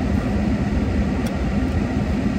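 Steady low rumble and hiss of a running car heard from inside its cabin, with a faint click a little over a second in.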